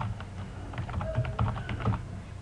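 Computer keyboard typing: a few keystrokes at the start, then a quicker run of keys from about three-quarters of a second in.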